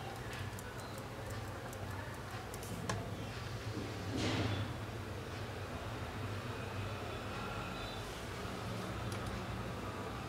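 A few sharp clicks of laptop keys being pressed over a low steady hum, with a brief rustle about four seconds in.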